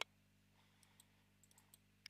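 Near silence: room tone, with one brief click at the very start and a few faint ticks.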